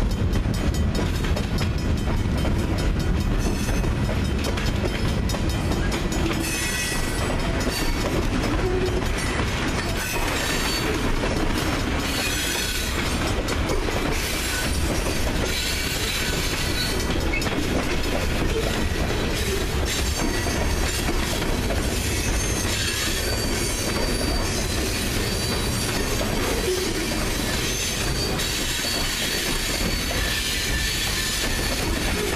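Freight cars rolling past close by: steady rumble of steel wheels on rail, with clicks from the rail joints. High-pitched wheel squeal comes and goes as the cars take the curve.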